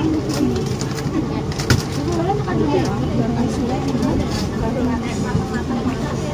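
Several people talking in a small, busy eatery, with a sharp clink of a spoon against a bowl about two seconds in.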